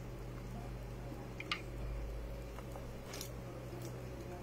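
Soft mouth sounds of someone eating fufu and okra soup with her fingers and chewing, with a short click about a second and a half in, over a steady low hum.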